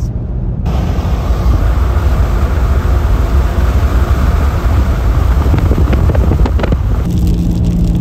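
Loud, steady tyre and wind noise of a car driving at highway speed. A few faint clicks come near the end, and then the noise drops to a quieter, steadier hum.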